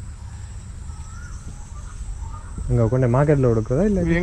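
Outdoor garden ambience: a steady high insect drone with a couple of faint short bird chirps over a low rumble. A man's voice starts talking about two-thirds of the way in.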